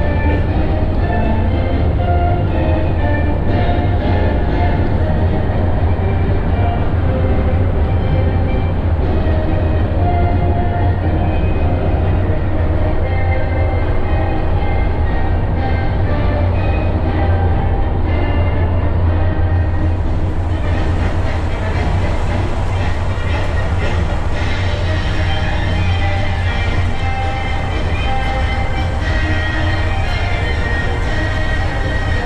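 Steady low engine drone and road noise of a motorized tour trolley bus driving along, with music playing over it. More hiss joins about twenty seconds in.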